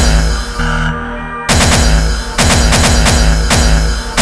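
Hardcore gabba track at 140 BPM, sequenced in FastTracker II from 8-bit samples: pounding kick drums that drop in pitch, with synth layers over them. About a second in the beat thins out briefly, then the kicks come back in full.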